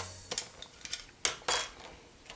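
Light clicks and taps of a multigrade contrast filter (grade 2) and its small square frame being handled, four in all, the sharpest pair about a second and a half in.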